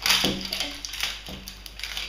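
Thin plastic wrapping on a LOL Surprise ball crinkling and rustling in irregular bursts as it is peeled off by hand.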